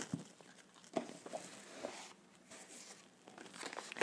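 Faint rustling and scattered small clicks of tarot cards and a card box being handled.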